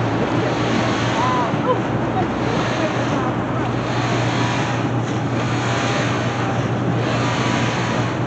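A motorboat under way: a steady low engine drone under constant rushing wind on the microphone and water noise.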